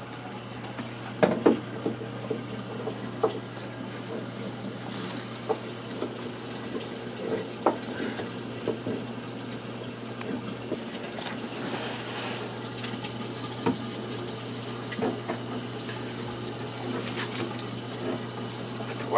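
Steady water flow in a reef aquarium's sump under the tank, with a steady low hum and scattered light knocks and clicks as equipment and wires are handled inside the wooden cabinet.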